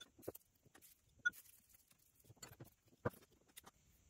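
Light handling noise: a few brief, scattered clicks and rustles of hands working shredded wood fiber into a small glass flask, faint, with near quiet in between.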